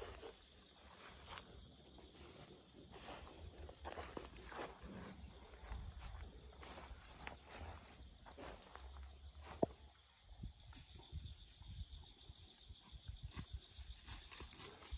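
Faint footsteps on dry leaf litter and dirt, an irregular run of soft crunches and rustles, with one sharper snap about two-thirds of the way through.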